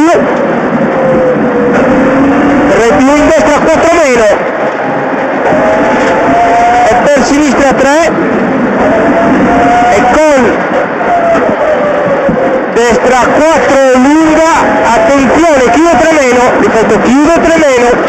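Rally car engine heard from inside the cabin at stage pace. The revs climb in each gear and drop sharply at each shift or lift, again and again through the corners.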